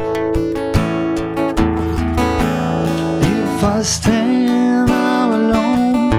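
Acoustic guitar strummed steadily in a live song, with a man's singing voice coming in about halfway through.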